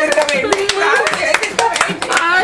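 A quick, uneven series of hand claps under a voice whose pitch glides smoothly up and down.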